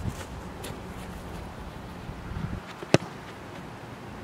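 A single sharp thud about three seconds in: a boot striking an Australian rules football on a goal kick, over a steady low outdoor background.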